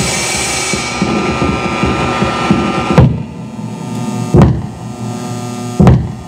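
Live electronic noise music: a dense, noisy texture with held tones, broken by loud sudden hits about three seconds in, again just past four seconds, and near the end.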